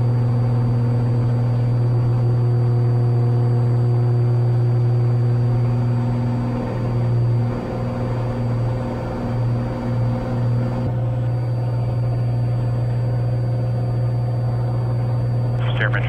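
Cessna 182's six-cylinder piston engine and propeller running at full takeoff power, a loud, steady low drone heard inside the cabin through the takeoff roll and climb-out. The drone wavers and pulses from about seven to eleven seconds in, then settles again. A radio voice begins right at the end.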